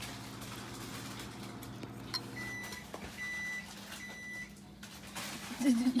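A steady low electric hum from a kitchen appliance stops a little before halfway, and three short, high electronic beeps follow about a second apart, the kind of signal an appliance gives when its cycle is done.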